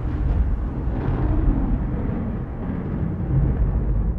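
A live heavy-metal band's distorted electric guitars and bass ringing out on a held low chord, a loud rumble that slowly dies away.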